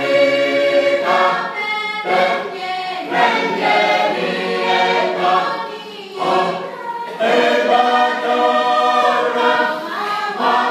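A mixed choir of women and men singing a hymn together, in sung phrases with short breaks between them.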